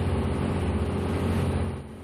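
Boat engine running steadily with a low hum, heard on board. It drops away suddenly near the end.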